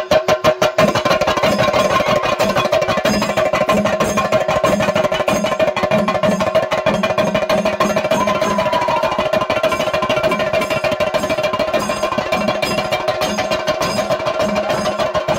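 Chenda drums beaten in a fast, dense roll for the temple ritual dance, with a steady ringing tone held above the drumming.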